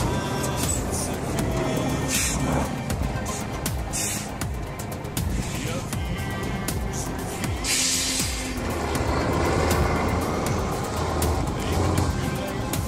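Music playing over the diesel engine of a Tatra 815 Dakar rally truck driving, its low rumble steady beneath.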